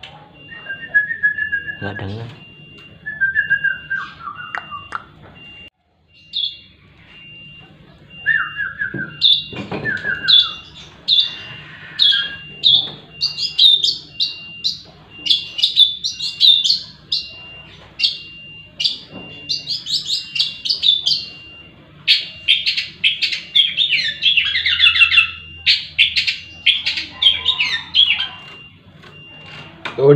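A man whistles a few short falling phrases to a caged long-tailed shrike (cendet), and the bird answers with a long run of rapid, high chirping calls through the second half.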